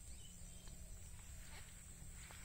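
Faint outdoor ambience over a rice paddy: a low wind rumble on the microphone under a steady high hiss, with a few faint chirps and ticks.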